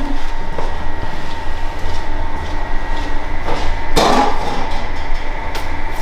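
Steady low workshop hum, with a short clatter about four seconds in and a faint click near the end.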